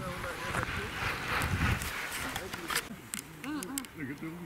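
Wind rumbling on the microphone for about two seconds, cutting off abruptly, followed by people talking nearby with a few light clicks.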